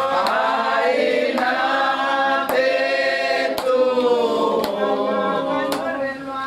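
A group of women singing a hymn together, unaccompanied, in long held notes. A sharp clap comes about once a second, keeping the beat.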